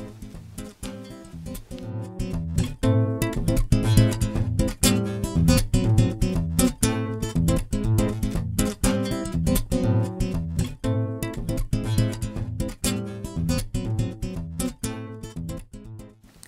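Background music played on acoustic guitar, a steady run of picked and strummed notes.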